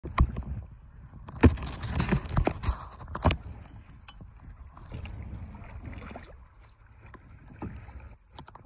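Kayak paddling on a lake: paddle blades dipping and water splashing and dripping close by, with several sharp splashes in the first few seconds, then softer water lapping.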